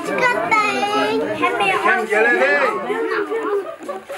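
Several people talking at once, lively overlapping chatter.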